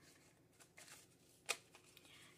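Paper banknotes being handled and fanned, giving soft, faint rustles, with one short, sharper click about one and a half seconds in.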